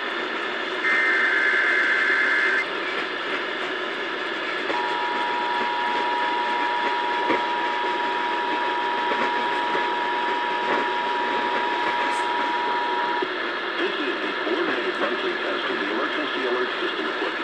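Emergency Alert System test heard over AM radio with static hiss. About a second in comes a warbling burst of SAME header data, and from about five seconds in the steady two-tone EAS attention signal sounds for about eight seconds, then stops.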